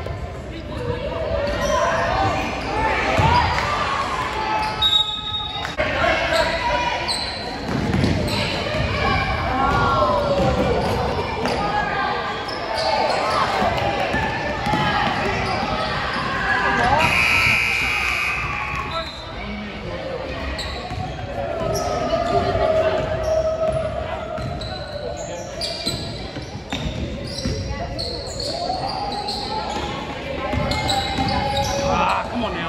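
Basketball game in a gym: a ball bouncing on the court amid voices of players and spectators, echoing in the large hall, with a brief high-pitched tone about seventeen seconds in.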